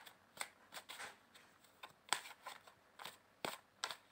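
A tarot card deck being shuffled overhand by hand: the cards give faint, irregular short snaps and slaps, about ten in all, with a light rustle between them.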